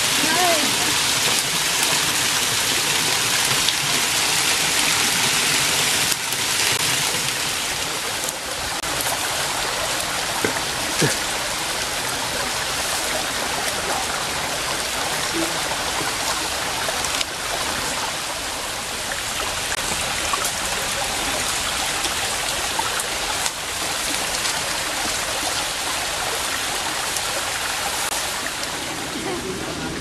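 A mountain stream running and splashing over granite boulders in a small cascade, a steady rushing of water that is a little louder for the first six seconds.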